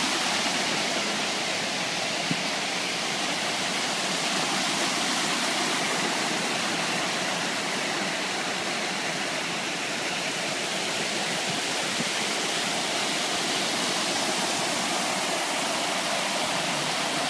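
Ring of fountain jets bubbling up and splashing back into the basin, a steady continuous rush of water.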